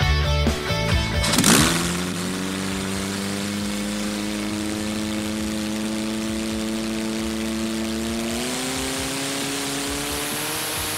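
Rock guitar music cuts off about a second in, giving way to a racing hydroplane's engine running at a steady pitch over the hiss of water spray. The engine's pitch steps up near the end.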